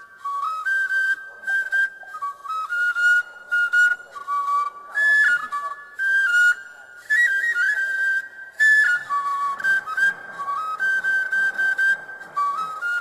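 Background film music: a solo flute melody of short stepped notes, moving between quick runs and briefly held notes.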